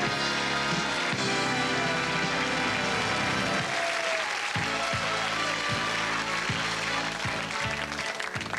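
An audience applauding over music. About halfway through the music settles into a steady bass beat.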